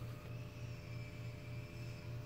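Faint steady electrical hum with a faint high-pitched whine above it.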